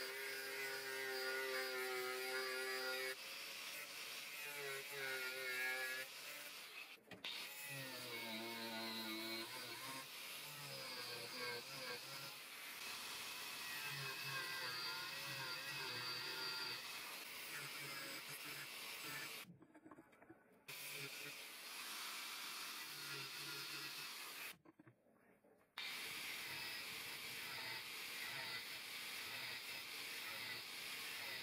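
Angle grinder with a cutting disc running and cutting into a hardened steel file, a steady motor whine whose pitch wavers as the disc bites into the steel. The sound drops out briefly twice, about two-thirds of the way through.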